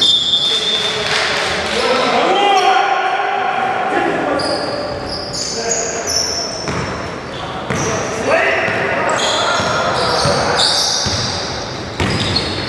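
Live basketball in a large gym: the ball bouncing on the wooden court amid players' voices calling out, all echoing in the hall.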